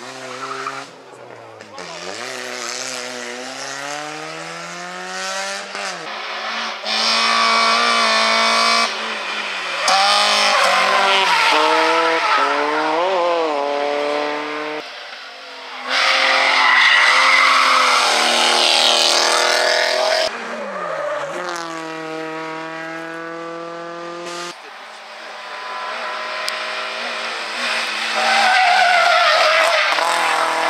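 A series of rally cars driven flat out on a tarmac stage. The engines rev hard, climbing in pitch and dropping sharply at each gear change, and the tyres squeal as the cars slide through the bends.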